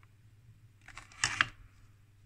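Handling noise: a few small clicks and one short louder rustle about a second in as the instrument is moved, against a faint steady low hum.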